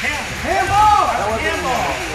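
Several spectators shouting and calling out over one another, their voices rising and falling in long calls with no clear words, loudest about half a second to a second and a half in.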